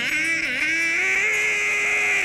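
A man's vocal imitation of bagpipes: one long, steady, nasal buzzing note over a low drone, wavering slightly in pitch.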